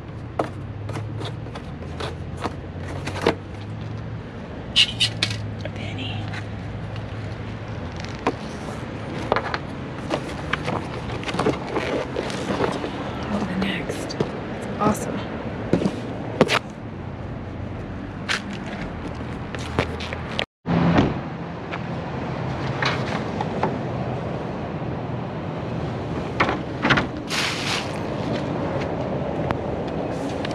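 Cardboard box being opened and handled: scattered scrapes, rustles and knocks of cardboard flaps, over a low steady hum.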